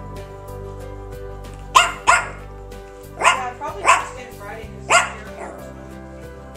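A small dog barking five times: two sharp barks close together about two seconds in, then three more spread over the next three seconds, over steady background music.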